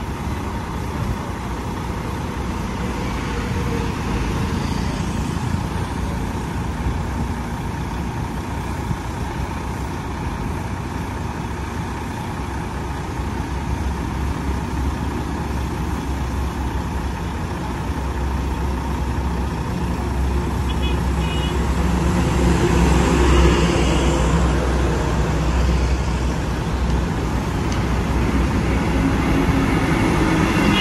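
Heavy diesel trucks and highway traffic running steadily, with a low engine sound that swells as a heavy vehicle passes about two-thirds of the way in and again near the end.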